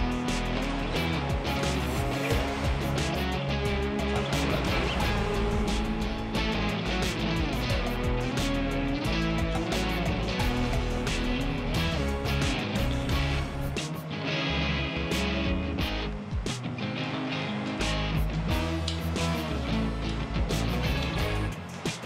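Background music with guitar and a steady beat.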